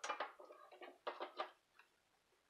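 Lid of a Brentwood electric tortilla maker being lowered and pressed shut: a quick run of light metallic clicks and clatters over about the first second and a half.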